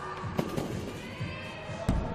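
A gymnast's double mini trampoline pass: a few soft knocks about half a second in, then one heavy thud as he lands on the landing mat near the end, over steady arena crowd noise.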